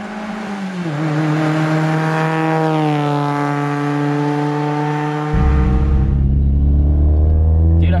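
2002 Mazda MX-5 Miata NB2's 1.8-litre four-cylinder engine running as the car drives past and away, its note dropping in pitch as it goes by. A little over five seconds in, the sound cuts to inside the small cabin, where the engine is a steady, heavy low drone.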